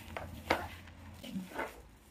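A hand squeezing and kneading damp, sticky homemade kinetic sand in a plastic bowl: a few soft, short squishes and crunches, with a short faint voice sound about one and a half seconds in.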